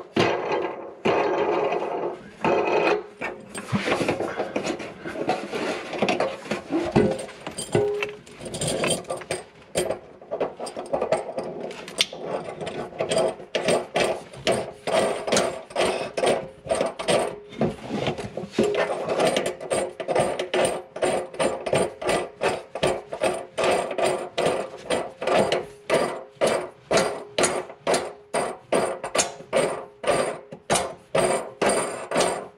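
A hand tool worked in quick repeated strokes against the underside of a sink, giving a rhythmic scraping, ratcheting sound at about two strokes a second that grows more regular in the second half.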